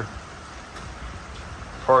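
Steady hiss of pouring rain, with a man's voice starting right at the end.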